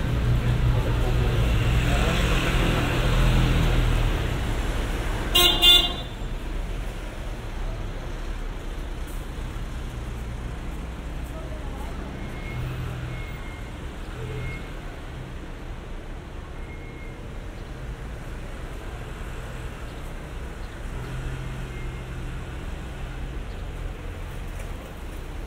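A motor vehicle rumbles past close by, then a vehicle horn gives one short toot about five seconds in, the loudest sound. After that come the quieter hum of street traffic and passers-by.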